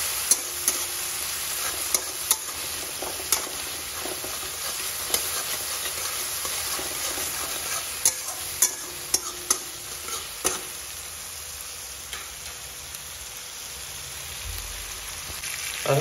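Onion and capsicum pieces sizzling in oil in a steel kadai while a steel spatula stirs them, with sharp clinks of the spatula against the pan scattered through the first ten seconds or so. The stirring clinks stop in the last few seconds and only the steady sizzle remains.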